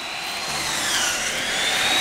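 Steady engine noise, growing slowly louder, with a high whine that dips in pitch near the middle and rises back.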